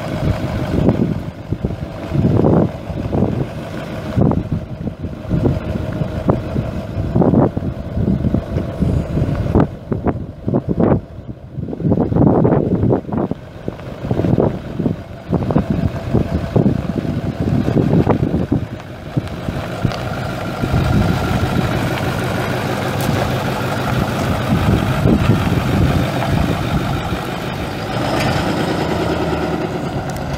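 A 2008 Ford F250's 6.4L turbo diesel V8 running, uneven in level with irregular loud surges for the first two-thirds, then steadier from about two-thirds of the way in.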